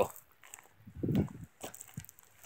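Footsteps through tall grass: a few short, soft steps, the clearest about a second in, in an otherwise quiet gap.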